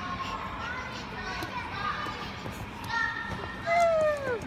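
Children playing, a background babble of many overlapping young voices. Near the end a louder single voice gives a call that falls in pitch.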